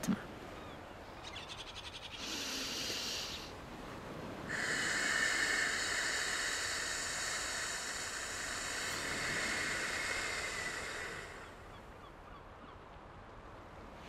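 A woman draws a short breath in through her nose, then blows out long and slowly through her closed fist as if through a tube. The exhalation is a steady hiss lasting about seven seconds. It is the slow, controlled out-breath of a breathing exercise.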